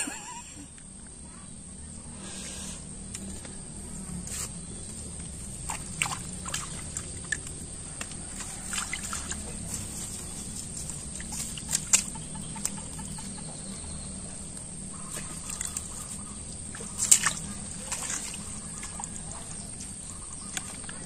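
Quiet outdoor ambience with a steady high-pitched whine and scattered faint clicks and ticks.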